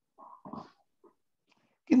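A brief, faint voiced sound in the first half-second, like a short murmur, then a voice starts speaking in Bengali right at the end.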